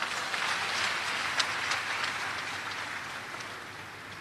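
A congregation applauding, the clapping fading away over a few seconds.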